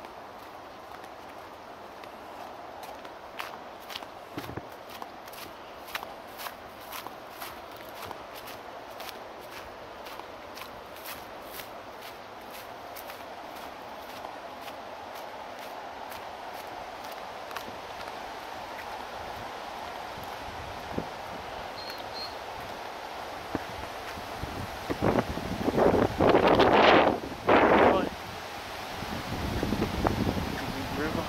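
Footsteps on a concrete path, about two a second, over a steady background hum. Near the end come a few seconds of loud, rough rushing bursts.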